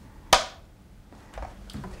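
A film clapperboard's hinged sticks snapped shut once, a single sharp clap about a third of a second in. It is the slate marking the start of a take so that sound and picture can be synced.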